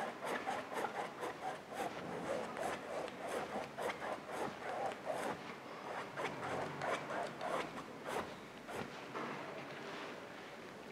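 Paintbrush bristles rubbing across a stretched canvas in quick, short back-and-forth blending strokes, the brush damp with little paint on it. The strokes stop about a second before the end.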